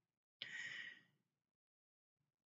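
A single short, quiet breath from a person, about half a second long, with near silence around it.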